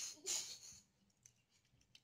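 Soapy wet hands rubbing together: a brief faint swish in the first half second, then a few faint wet clicks.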